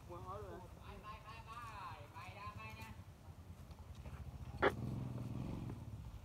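Voice-like calls whose pitch rises and falls for the first three seconds, then a single sharp click about four and a half seconds in, over a low hum.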